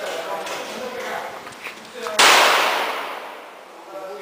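A single rifle shot about two seconds in, very loud and sudden, followed by a long echo fading away over a second and a half under the range's concrete roof.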